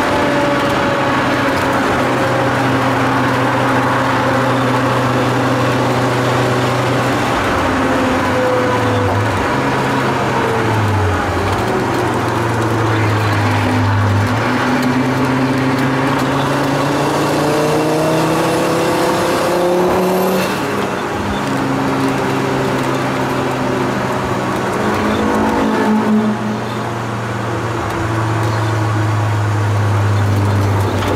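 Tuned Volvo 850 T5R's turbocharged five-cylinder engine heard from inside the cabin while driven hard. The revs sink steadily for about twelve seconds, then climb again, with breaks in the engine note at gear changes about twenty seconds in and again near twenty-six seconds.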